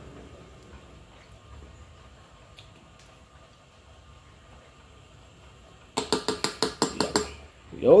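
Quiet room tone, then near the end a quick run of about eight sharp clinks against a stainless steel dog food bowl, each ringing briefly.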